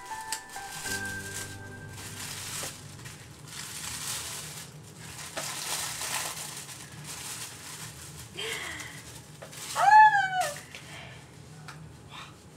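Tissue paper rustling and crinkling as a gift package is unwrapped, over soft background music. About ten seconds in comes the loudest sound, a short high-pitched call that rises and falls.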